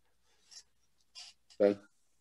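A near-silent pause with two faint, short scratchy sounds, then a man's voice saying "Okay" near the end.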